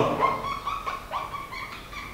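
Marker pen squeaking on a whiteboard while writing: a string of short, high squeaks, some sliding in pitch, one for each stroke.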